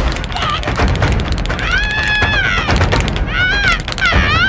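A cartoon character's high-pitched wailing cry: one long held wail in the middle, then shorter wavering sobs near the end, over steady low background noise.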